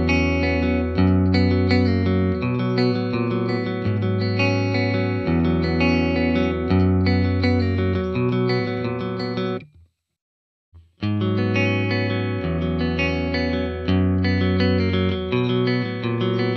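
Clean electric guitar (a Telecaster) played through the Mooer GE300's Fender '65 Deluxe Reverb amp model with a 1x12 cabinet simulation, a repeating chordal phrase. It stops about ten seconds in, and after a second of silence a similar phrase starts on the '65 Twin Reverb model with a 2x12 cabinet simulation.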